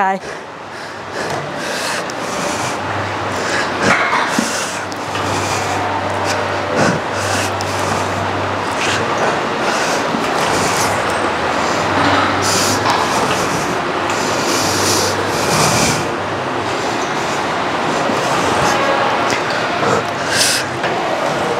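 A woman's heavy breathing, sighs and strained exhales, close on a clip-on mic, as she works through a set of banded Smith machine hip thrusts. The sound goes on in repeated breathy pulses, with mic and clothing rustle under it.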